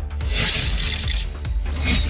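A news-bulletin background music bed with a steady low beat, overlaid by a rushing whoosh transition effect that swells about a quarter second in and dies away just after a second. A shorter whoosh comes near the end.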